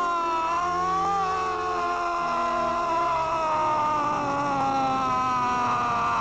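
Eerie horror-trailer score: a high, wavering, siren-like tone, layered several times over, sliding slowly down in pitch above low held notes.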